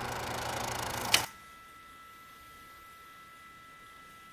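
The acoustic guitar's last chord dies away for about a second and is cut off by a sharp click. A quiet room tone follows, with a faint steady high whine.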